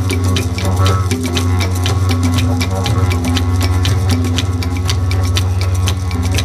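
Several didgeridoos droning together in a low, steady, pulsing tone, with percussion keeping a fast even beat of about five strokes a second.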